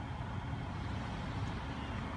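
Steady low hum of road traffic passing on a nearby street.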